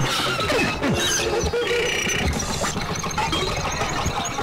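Experimental noise music played on turntables and electronics: a dense, crackling texture with several falling pitch glides about half a second in. Short high electronic blips and a brief cluster of steady high tones follow near the middle.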